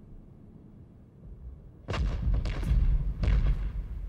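Battle gunfire: a low rumble, then about two seconds in a loud run of irregular shots and heavy booms begins.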